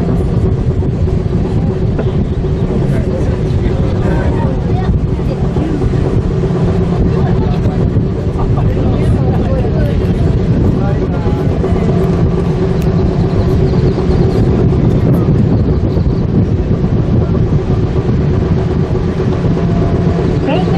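Steady rumble with a constant mechanical hum inside a Komagatake Ropeway aerial tramway cabin as it runs downhill along its cables.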